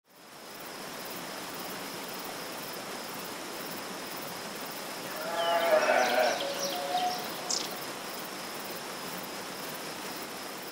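Sheep bleating, several overlapping calls about halfway through, with a short high squeak at their end, over a steady background hiss.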